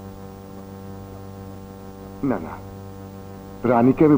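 A steady low droning tone with many even overtones, a held note in the background score. A short vocal sound comes about two seconds in, and a man's voice comes in near the end.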